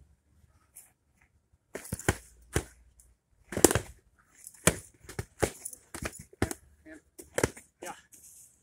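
Foam-padded LARP swords and shields hitting each other in a fast exchange of blows: a string of short, sharp smacks, a dozen or so, in irregular bunches over several seconds.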